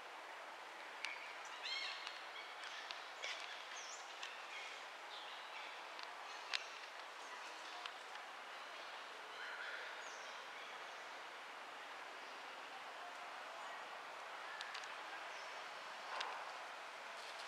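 Forest ambience: a steady hiss with scattered short bird chirps, most of them in the first few seconds, and a sharp click about six and a half seconds in.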